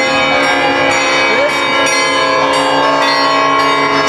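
Church bells pealing together, several bells at once, with fresh strikes about twice a second over a dense, continuous ring: festive Easter bell ringing.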